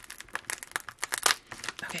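Metallic foil bubble mailer crinkling and crackling in the hands as its sealed flap is pried and peeled back, in a rapid, irregular series of short crackles.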